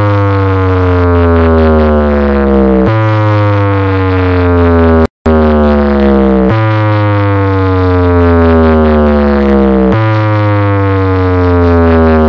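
Large DJ box speaker stack playing a loud electronic test sound with heavy bass: long tones that glide slowly down in pitch, each about three and a half seconds, then restart high. It cuts out for a split second about five seconds in.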